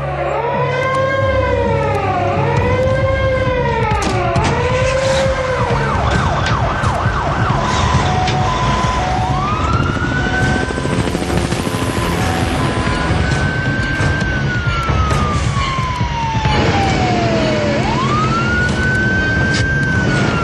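Several emergency vehicle sirens sounding together over a low engine rumble. First comes a fast wail rising and falling about once a second, then a two-note hi-lo tone, then slow long wails rising and falling.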